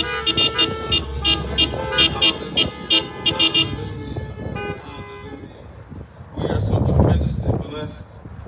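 A worship band's song on keyboard and acoustic guitar winds down over the first few seconds, with car horns honking from the congregation's cars. A loud, low burst of noise follows, about six seconds in.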